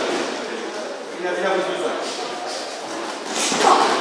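Indistinct talk from several people, echoing in a large hall, with a short, louder noise near the end.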